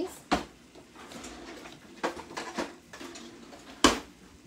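Kitchen utensils clattering while a utensil drawer is rummaged for a silicone spatula, with a sharp knock just after the start and a louder one near the end.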